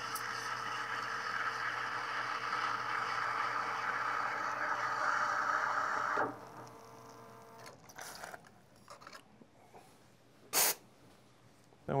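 Espresso machine steam wand frothing milk in a stainless steel pitcher: a steady hiss that slowly grows louder and cuts off abruptly about six seconds in. After that, faint handling sounds and a single short knock near the end.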